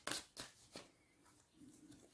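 Deck of tarot cards being shuffled and handled by hand: a few short, crisp card snaps in the first second, then faint rustling.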